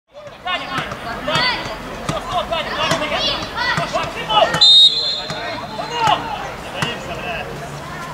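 Football pitch sound: several players shouting over one another, a few sharp ball kicks, and one short high referee's whistle blast about halfway through.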